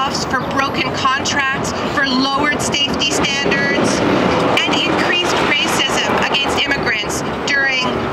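A woman speaking at a microphone in an even, declaiming voice, with a steady hum of city traffic behind her.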